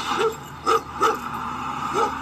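A cartoon dog barking four short, sharp times, played through laptop speakers.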